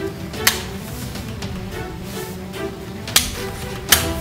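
Background music, with three sharp clicks from the MP7 airsoft gun's flip-up sights being snapped up and down: one about half a second in and two near the end.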